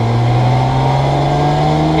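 Campagna T-Rex's BMW K1600 inline-six motorcycle engine pulling under acceleration in gear, its pitch rising slowly and steadily, heard from the open cockpit.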